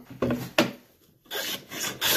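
Wooden sash molding plane cutting a profile along the edge of a wooden sash piece. After a short knock, the plane's scraping stroke starts about a second and a half in. It is cutting with the grain and taking a clean shaving.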